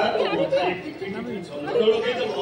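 Speech: voices talking, not picked up by the transcript.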